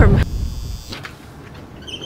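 Wind rumbling on the microphone, cut off sharply about a quarter-second in. A quiet high electrical buzz follows for about half a second, then faint indoor room tone.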